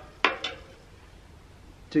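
Two short, sharp clicks in quick succession just after the start, then a quiet pause; a man's voice comes back at the very end.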